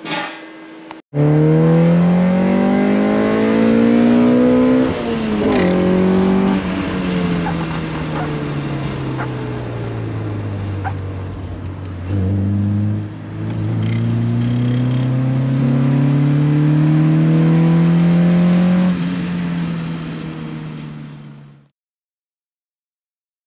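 K-swapped Honda Civic's inline four-cylinder engine heard from inside the cabin while driving: the revs climb for about four seconds, drop sharply at a gear change, fall away slowly, then climb again in a long pull before the sound cuts off near the end.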